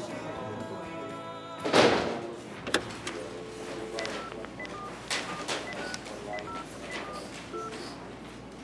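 A push-button telephone being dialled: about a dozen short key tones, roughly three a second, from about four seconds in. Before that, sustained music tones die away and a sudden loud burst of noise comes about two seconds in.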